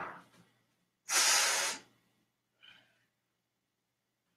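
A man breathing out hard in one short hiss about a second in, with a quieter breath just before it and a fainter one near the end.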